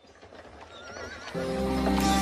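A horse's whinny with a wavering pitch fades in out of silence as a song opens. About one and a half seconds in, the music comes in with sustained chords and a deep bass.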